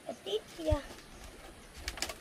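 Short wordless vocal sounds from a woman who cannot speak, a few brief rising and falling calls in the first second as she gestures. A sharp knock or two near the end.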